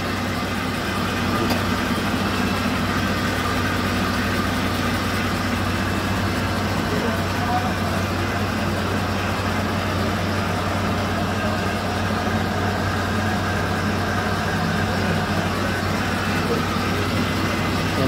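Ford F-150's engine idling steadily, heard from underneath the truck, during a test run after an automatic transmission fluid and filter change.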